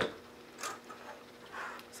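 Quiet kitchen with a low steady hum, broken by two faint handling sounds of a can and a glass bowl, one a little after the start and one near the end.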